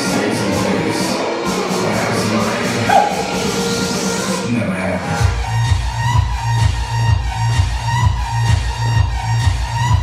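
Electronic dance music: a build-up with a rising sweep, then about five seconds in a heavy bass beat drops in at roughly two beats a second.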